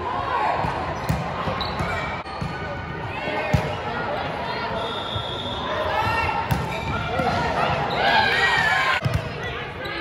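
Volleyball rally on an indoor hardwood court: sharp slaps of the ball being passed and hit, with rubber-soled shoes squeaking on the wood floor. Voices of players and spectators run underneath, and the squeaks come thickest near the end.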